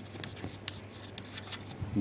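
Chalk writing on a chalkboard: short, faint scratches and taps as letters are formed, over a steady low hum.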